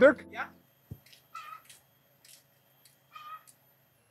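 A short spoken word at the start, then a soft thump about a second in and several faint, short animal calls spaced through the rest.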